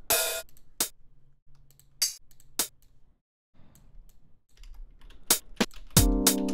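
Hi-hat samples previewed one at a time in a music production program's sample browser: about six short, bright hits spaced irregularly, mixed with computer keyboard and mouse clicks.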